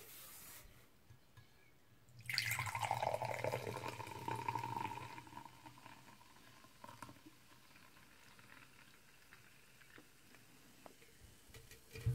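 Carbonated energy drink poured from a can into a glass: a splashing stream that starts about two seconds in and lasts about four seconds, its pitch changing as the glass fills. Faint fizzing of the foam follows.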